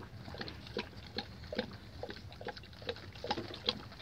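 Cane Corso puppies eating together from a shared piece of food, with irregular wet chewing and smacking sounds, two or three a second.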